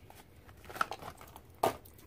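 Quiet rustling of cardboard packaging as a plastic watercolour palette case is slid out of its box, with a small click a little under a second in and a sharper knock near the end.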